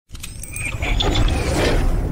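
Logo-intro sound effects: a few sharp mechanical clicks, then whirring and a low rumble that grow louder.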